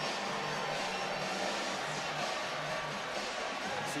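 Steady stadium crowd noise with music playing in the background.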